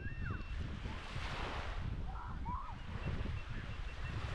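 Small waves lapping and washing onto a sandy shore, with one wash swelling up about a second in, while wind rumbles on the microphone. A few faint distant voices come through in the middle.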